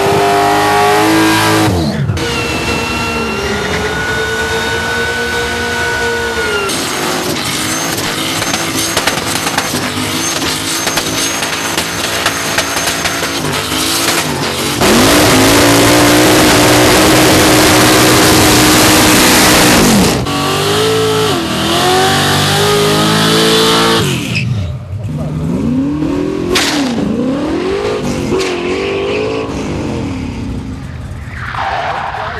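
Modified V8 burnout cars, a Holden Torana and a supercharged Holden Commodore wagon, revving hard with their rear tyres spinning in smoke, in a string of short clips. The revs rise and fall between cuts, and the loudest part is a long steady high-rev hold near the middle.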